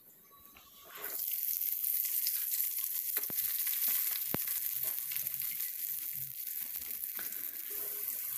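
Cut yard-long beans sizzling steadily as they deep-fry in hot oil in a wok. The sizzle starts about a second in, with two sharp clicks near the middle.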